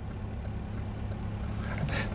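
Car cabin noise from inside a moving or slowly moving car: the engine and road make a steady low hum.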